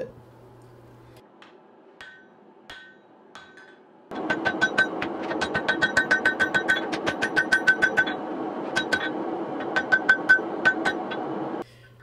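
Hand hammer striking a glowing axe head on a steel anvil: a few scattered blows, then from about four seconds in a fast run of blows, several a second, each with a bright metallic ring. A steady rushing noise runs under the fast blows and cuts off with them near the end.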